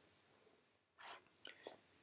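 Near silence, with a few faint breath and mouth sounds from the narrator in the second half, just before he speaks again.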